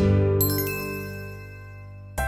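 A sparkly "ta-da" reveal chime: bright tinkling tones come in about half a second in over a ringing low chord, and everything fades away slowly.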